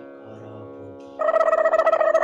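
Devotional background music with a steady sitar-like drone. A little over a second in, a loud ringing tone with a fast, even flutter cuts in suddenly and holds.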